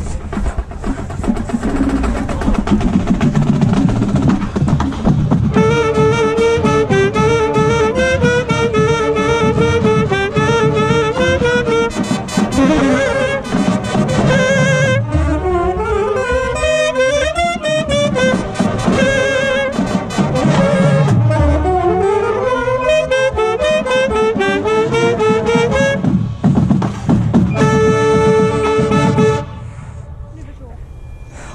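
Marching band drums and percussion. From about five seconds in, a saxophone solo plays close to the microphone, with fast runs sweeping up and down over the percussion. A long held note near the end stops abruptly.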